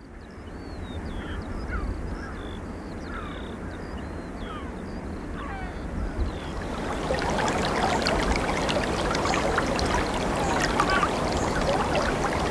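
Birds calling outdoors, a string of short falling cries that fades in over a low steady rumble; from about seven seconds in, close water lapping and splashing takes over and grows louder.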